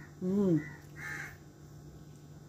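A woman's short closed-mouth "mmm" of approval while chewing a bite of bun, rising then falling in pitch. About a second in comes a fainter, brief harsh sound.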